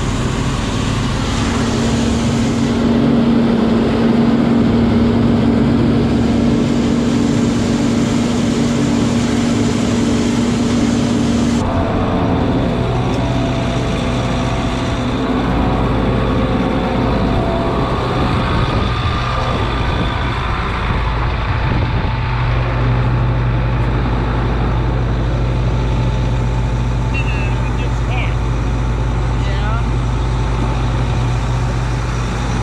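Heavy diesel machinery running steadily: a silage truck driving beside a John Deere 5830 forage harvester as it chops corn. About 12 s in the sound changes abruptly to a deeper, steady engine idle.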